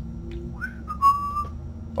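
A short, high whistle-like tone that glides up about half a second in, then holds steady for about half a second before stopping, over a faint low hum.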